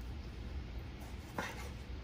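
A kitchen knife cutting through a tomato and tapping once on a bamboo cutting board a little past halfway, over a low steady hum.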